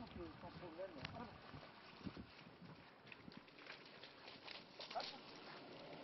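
Faint, irregular footsteps scuffing over a dirt track strewn with dry leaves as a person and a dog walk along it.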